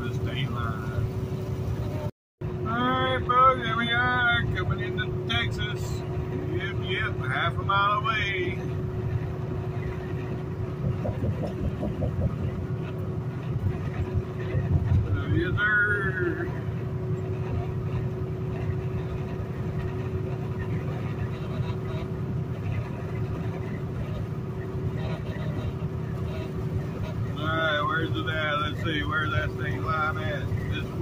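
Inside a semi-truck cab at highway speed: the diesel engine and road noise keep up a steady low drone with a constant hum. Short stretches of a voice come and go a few times. The sound cuts out entirely for a moment about two seconds in.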